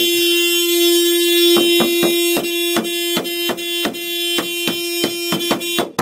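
A Mazda's car horn sounding on and on as one steady tone, stuck on with nobody pressing it. It cuts out for a split second near the end, then sounds again. From about a second and a half in, a quick series of knocks, about three a second, runs over it.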